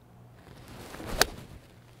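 A Cobra King iron swung at a golf ball: a short rising swish, then a single sharp click of the clubface striking the ball a little over a second in. The strike is thin ("skinny").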